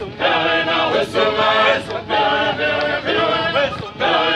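A group of men singing a traditional dance chant in chorus, many voices together in short repeated phrases with brief breaks between them.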